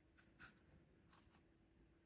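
Faint strokes of a small watercolor brush tip on a canvas panel: four short brushing sounds, the loudest about half a second in, over near silence with a faint steady hum.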